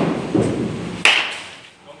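A baseball bat hitting a ball once, about a second in, a single sharp crack during batting practice.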